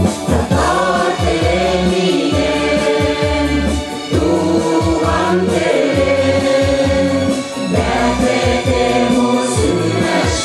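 A mixed choir of men and women singing a Tatar song together over an instrumental accompaniment, with short breaks between phrases.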